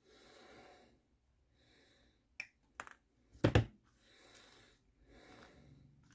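Quiet nasal breathing while plastic model-kit sprues are handled: two light clicks about two and a half seconds in, then a louder plastic knock about a second later.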